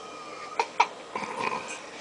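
A baby's short fussing vocal sound, coming just after two sharp clicks.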